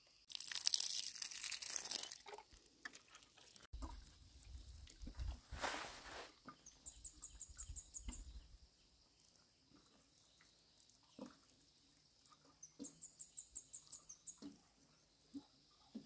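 Water pouring from a plastic watering can onto soil: a hissing spell near the start and a shorter one about six seconds in, over a low rumble. A small bird gives a quick high trill twice, about seven and thirteen seconds in.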